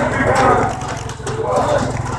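A steady low engine drone, a motor running without change, under voices talking.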